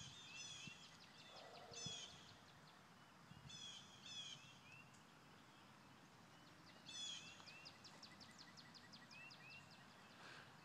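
Faint songbird singing: short phrases of quick high descending notes, some ending in a couple of lower slurred notes, repeated several times at irregular intervals.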